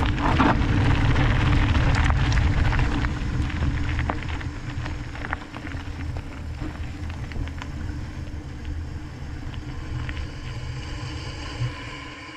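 Knobby mountain-bike tyres rolling downhill over a gravel trail: a loud, low rolling noise with scattered clicks of stones, which turns quieter and smoother about four seconds in as the bike moves onto a paved path.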